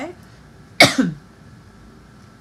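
A woman coughs once, a single sharp cough about a second in.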